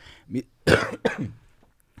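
A man clears his throat once: a short, loud burst about three-quarters of a second in, after a fainter brief sound.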